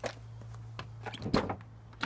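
Car door of a Porsche 996 being opened: a click at the start, then a cluster of latch clicks and clunks about a second in, the loudest near a second and a half, over a steady low hum.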